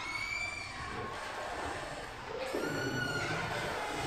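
Marker squeaking on a whiteboard as lines are drawn: a short high squeak at the start and a longer one about two and a half seconds in.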